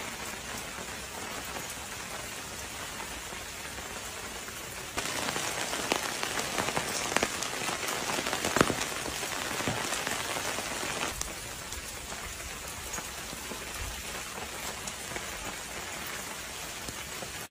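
Volcanic ash and cinders falling, a dense patter of small grains on hard ground and roofs that sounds like rain. The patter grows louder and crisper about five seconds in and eases back about six seconds later.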